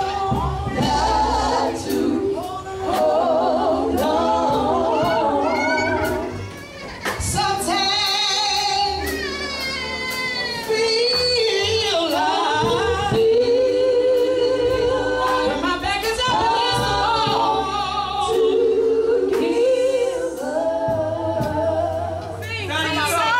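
A female gospel vocal group singing live into microphones, several voices together, over electric bass and drums.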